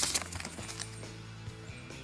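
A brief rustle of sheets of paper being handled and set down, a loud burst right at the start and a smaller one about half a second later, over background music with a steady beat.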